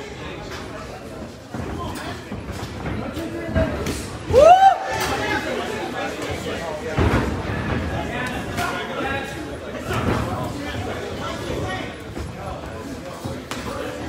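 Spectators' voices and shouts echoing in a large hall, with one loud yell about four and a half seconds in. Occasional sharp smacks of kicks and punches landing in the ring come through under the voices.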